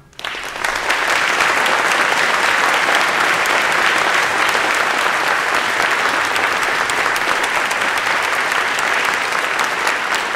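Audience applauding, building up within the first second and then holding steady.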